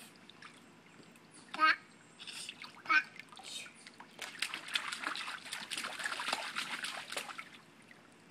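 Water splashing in a shallow plastic kiddie pool as a toddler moves through it, a continuous run of splashing from about four seconds in to about seven seconds. Earlier, the child lets out two short vocal sounds.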